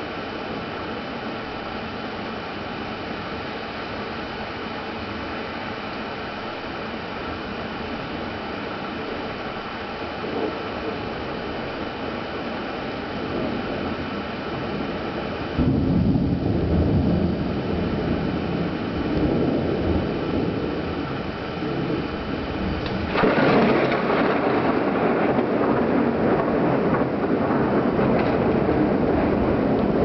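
Thunder from nearby cloud-to-ground lightning. A steady hiss runs for about half the time, then a sudden loud, deep rumble of thunder comes in, and a few seconds later a second, sharper clap rolls on.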